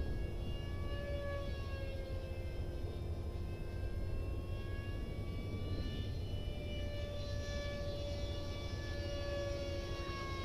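Whine of a radio-controlled 64mm electric ducted-fan MiG-15 jet in flight, its pitch slowly rising and falling, over a steady low rumble.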